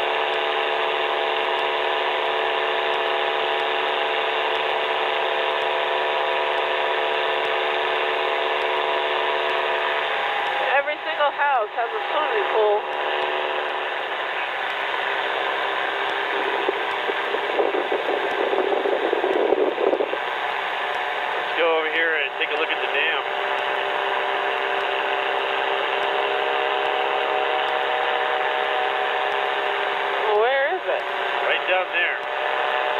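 Revo weight-shift trike's engine and pusher propeller in cruise flight: a steady drone with several steady tones. Short bursts of voice break in about eleven seconds in and again a little past twenty seconds.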